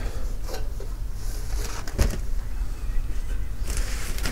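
Handling noise as a portable charcoal grill is lifted out of its fabric carry bag: faint rustling of the bag and a single knock about halfway through, over a steady low rumble.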